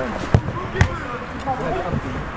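Two thuds of a football being struck, about half a second apart, with players' and spectators' voices behind them.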